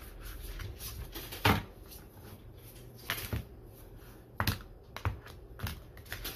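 A deck of oracle cards being shuffled by hand: a few scattered soft slaps and taps of the cards, the loudest about one and a half seconds in and again just past four seconds.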